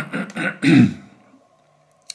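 A man clearing his throat: a few short, rough bursts in the first second.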